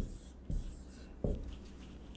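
Marker pen writing on a whiteboard: three soft taps of the tip on the board, with faint strokes between them.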